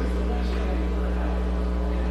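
A steady low hum with several steady higher tones above it, unchanging throughout, under faint indistinct voices.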